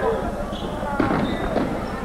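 Echoing crowd and game noise in a school gymnasium during a basketball game, with a single sharp knock about halfway through.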